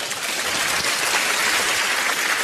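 Studio audience applauding: a steady, even wash of clapping.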